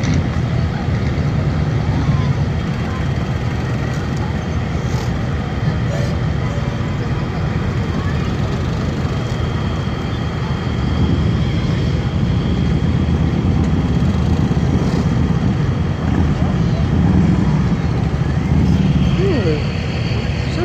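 Parade vehicles, a pickup towing a boat trailer among them, creeping past at walking pace. Their engines make a steady low rumble that swells a little in the second half.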